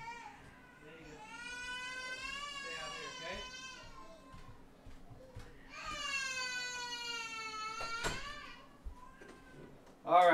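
A cat yowling: two long, wavering, drawn-out meows, the second ending in a sharp click.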